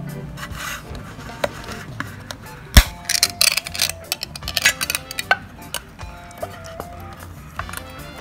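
A pull-tab metal cat-food can popping open with one sharp crack, followed by a couple of seconds of rasping scrapes as the lid is peeled back.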